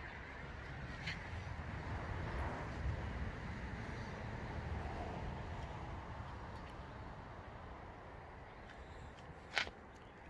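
Wind rumbling on a handheld phone's microphone outdoors, swelling a few seconds in and then fading, with a single sharp click near the end.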